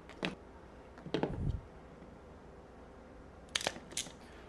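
Handling noise from working with wires and hand tools on a wooden workbench: a sharp click just after the start, a short cluster of knocks with a dull thump about a second in, and two sharp clicks near the end as a crimping tool is taken up.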